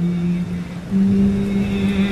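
Chanted mantra music: a low voice holds one long note, then steps up to a slightly higher held note about a second in.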